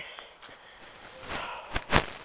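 Quiet background with a few short, sharp clicks and knocks near the end: handling and walking noise from a hand-held camera.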